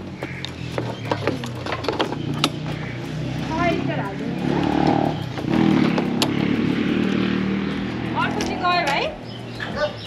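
A key clicking and turning in a motorcycle's locking fuel-tank cap as it is unlocked, with a few sharp clicks, over a steady idling-engine hum.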